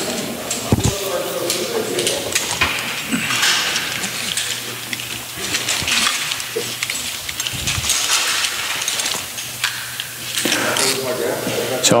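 Climbing rope and harness webbing rustling as they are handled, with irregular clicks and clinks of carabiners and metal rope devices, and faint voices in the background.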